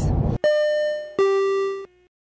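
A two-note descending chime, a ding-dong: a higher note rings out about half a second in and a lower note just over a second in. Both are cut off abruptly near the end.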